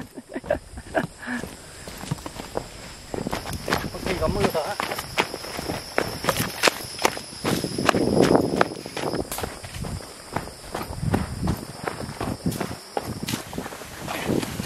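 Footsteps of a person walking quickly downhill in sneakers on a dirt trail, dry leaves and twigs crunching underfoot, in a quick irregular patter of steps.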